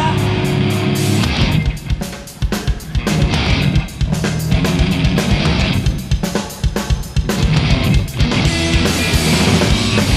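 A rock band playing live, with distorted electric guitar and a drum kit in a heavy passage. The playing breaks into choppy stop-start hits twice along the way.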